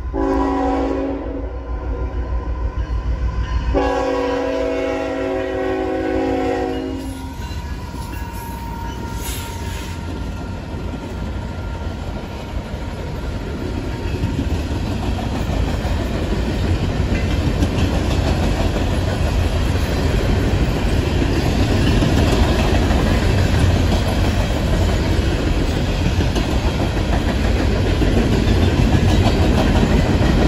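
Norfolk Southern diesel train's horn sounds two chord blasts, a short one then a longer one of about three seconds, over the low rumble of the locomotive. The rumble and the clatter of wheels on rails then grow steadily louder as the train passes close by.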